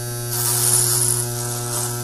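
Electric razor buzzing steadily right beside the right ear of a binaural dummy-head recording. About a third of a second in, a hiss grows louder as it comes close.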